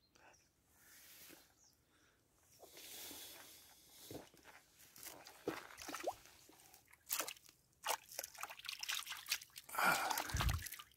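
Faint water sloshing and dripping with scattered small splashes as a small pike is released into shallow, weedy water at the river's edge. The splashes come more often from about four seconds in.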